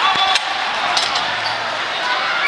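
Gym noise during a wrestling bout: spectators' voices, with short high squeaks of wrestling shoes on the mat and a couple of sharp knocks.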